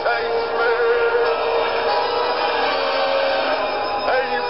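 Dramatic orchestral song: a male singer holds one long wavering note over a dense, full orchestral accompaniment.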